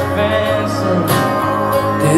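A rock band playing live: an acoustic guitar and an electric guitar holding sustained chords, with no singing in the lyrics here. The sound is picked up by a phone in the audience.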